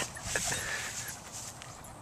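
A hand rubbing loose hair off a dog's coat: quiet rustling with a few faint short sounds about half a second in.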